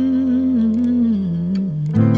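A man humming a wordless melody line into a studio microphone, wavering, then stepping down lower about a second and a half in, over sustained electric-piano chords in the intro of a pop ballad cover.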